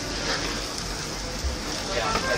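Steady sizzling hiss from a tabletop yakiniku grill, with restaurant chatter in the background.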